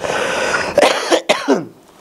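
A man coughing and clearing his throat close to a microphone: one long rasping cough, then a few shorter ones, stopping about a second and a half in.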